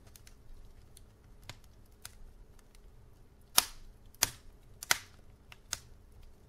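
Wood logs burning in a fireplace, crackling with scattered sharp pops; a few small ones early, then four loud pops in the second half.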